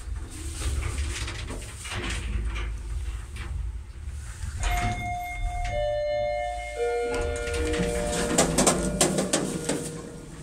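ShchLZ passenger lift cabin running with a low rumble, then its arrival chime: three overlapping bell-like notes, each lower than the last, the floor-arrival sound that is unusual for this lift. Near the end come a run of clacks, the loudest sounds here, as the doors open.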